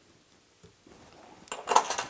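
Fly-tying scissors snipping off the excess of a twisted dubbing loop with a faint tick, then a short cluster of small metal clinks from the tools near the end.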